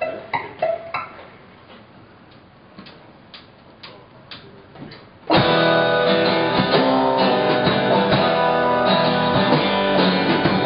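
A few guitar notes ring and fade, then a run of sharp clicks about twice a second, a drumstick count-in. About five seconds in, an alt-country band comes in together loudly with strummed acoustic guitar, electric guitars, bass, drums and violin.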